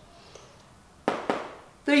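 Two sharp taps of a marker against a whiteboard, about a quarter second apart, in a quiet small room.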